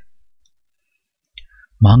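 A pause in a woman's Sinhala narration: near silence, broken about one and a half seconds in by a faint mouth click, with the reading voice starting again just before the end.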